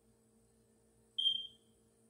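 A single short, high-pitched electronic beep a little after a second in, starting sharply and fading out quickly.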